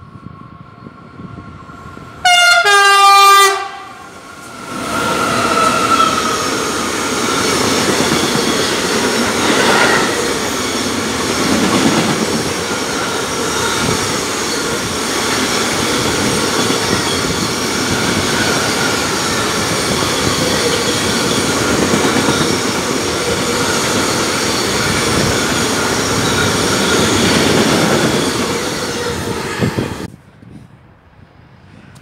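A freight locomotive's horn sounds once for about a second. Then a long train of bulk hopper wagons rolls past on the station track, its wheels rumbling and clattering steadily.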